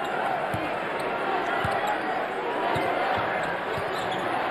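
A basketball being dribbled on a hardwood court, a few thumps roughly a second apart, heard through a game broadcast.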